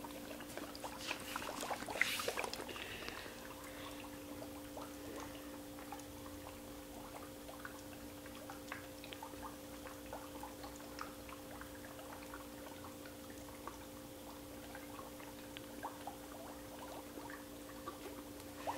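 Dry ice bubbling in hot water in a cup: faint, scattered pops and gurgles, a little busier in the first few seconds, over a steady low hum.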